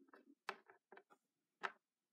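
Small plastic toy pony figures tapped and set down on a wooden surface: a few light clicks and two sharper ones about a second apart.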